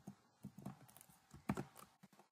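A few faint keystrokes on a computer keyboard: a short cluster about half a second in, then two more near the end.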